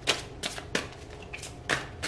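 Deck of tarot cards being shuffled and handled in the hands: a handful of short, sharp card clicks at uneven intervals.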